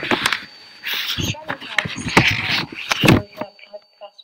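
Speech only, from an old filmed interview being played back, with a faint steady high tone underneath. The talking stops shortly before the end.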